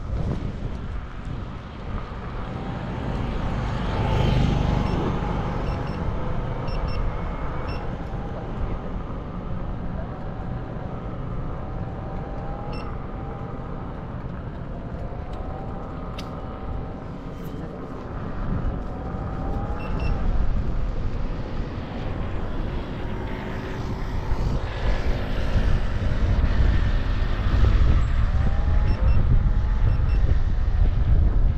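Riding noise from a Begode A2 electric unicycle: wind on the microphone and tyre rumble over brick paving, with a thin whine that wavers up and down with speed. The noise gets louder over the last few seconds.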